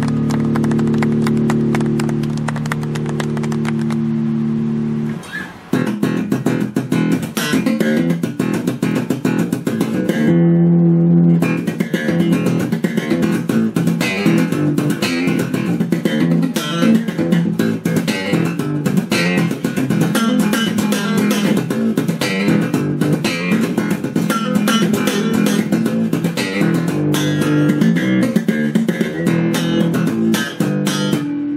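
Handmade electric bass guitar being played solo. Held notes ring out for about five seconds, then after a brief break comes a fast run of sharply attacked notes, with one note held briefly partway through.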